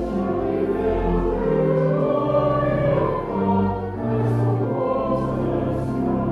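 Congregation singing a hymn together, moving from note to note over long held accompanying notes in the bass.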